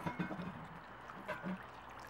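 Water dribbling and splashing faintly in a glass bowl as a soaked T-shirt is squeezed out, in short bursts near the start and again past the middle.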